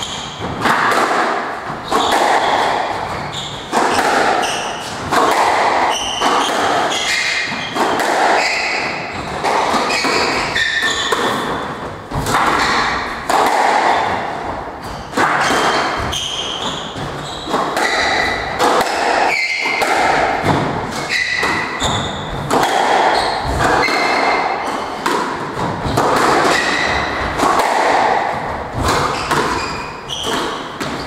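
A squash rally: the ball cracking off racquets and the court walls about once a second, each hit ringing in the court, with short squeaks of court shoes on the wooden floor.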